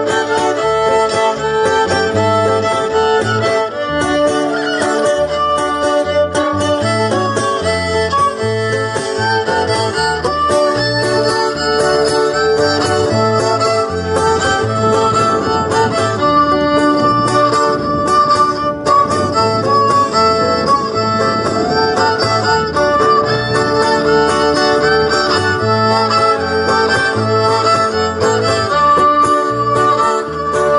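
Live folk dance music: a fiddle playing the melody over guitar accompaniment, with a steady, even bass-drum beat underneath.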